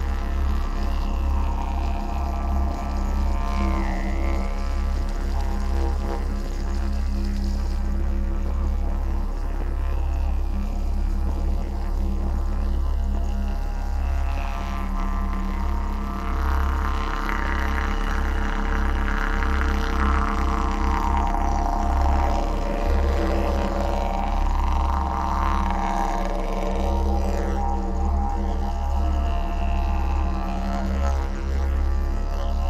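Background music: a continuous low drone, with bright overtones that sweep slowly up and down.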